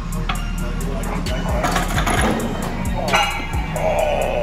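Background music with a steady beat over gym noise. About two seconds in, metal clanks and rattles as the loaded barbell is set back in the bench-press rack.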